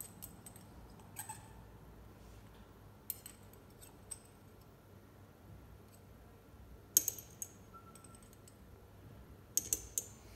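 Metal spatula clinking and scraping against glass while scooping powder from a small jar: a few light clicks, a sharper clink about seven seconds in, and a quick run of clinks near the end.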